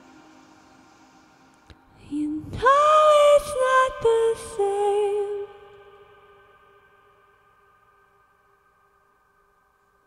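A woman's solo voice singing a closing phrase of a slow, dreamy song: a note swoops up about two and a half seconds in, a few held notes follow, and then it dies away in a long reverb tail.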